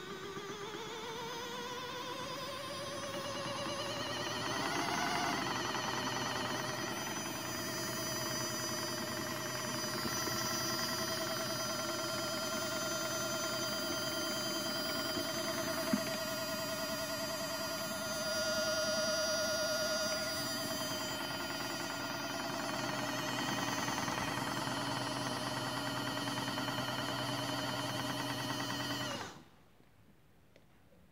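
Small electric motor of a modified Miele toy washing machine whining. It rises in pitch over the first five seconds as it spins up, holds a steady tone, and cuts off suddenly about a second before the end.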